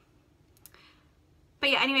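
Near silence (room tone) with one faint click a little over half a second in, then a woman starts speaking near the end.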